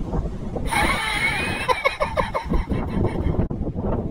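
Wind rumbling on the microphone, with a person laughing in a quick run of short 'ha' pulses about two seconds in.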